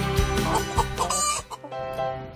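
Hen clucking a few times over background music, which drops out near the end.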